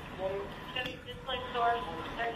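Indistinct, low speech from one or more voices, quieter than the shouted commands around it.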